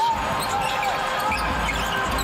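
Live basketball game sound in a large arena: a steady wash of crowd noise, with the ball bouncing on the hardwood court.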